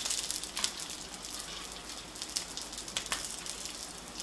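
Garlic cloves frying in hot oil in a skillet, browning: a steady sizzle with scattered sharper crackles.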